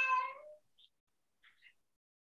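A cat meowing once, a single call of under a second with a slight upward bend at its end, followed by a few faint small sounds.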